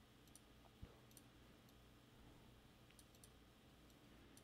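Near silence with a few faint computer-mouse clicks as colours are picked on screen.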